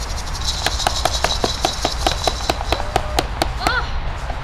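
A small group clapping: scattered, irregular claps from about half a second in until near the end, over a steady high buzz of insects.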